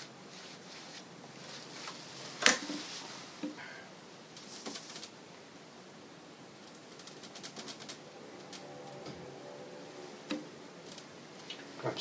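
Scattered small clicks and taps from handling oil-painting tools, such as brushes and the palette. The loudest is a sharp click about two and a half seconds in, and a quick run of fine ticks comes around seven seconds.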